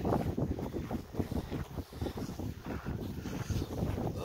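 Wind buffeting the microphone: an uneven, gusty rumble that rises and falls quickly.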